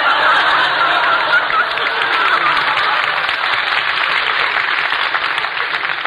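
A studio audience laughing loudly and at length at a punchline, heard through an old, narrow-band radio broadcast recording.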